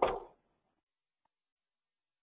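Near silence: the last word of a man's speech trails off at the very start, then dead silence with no other sound.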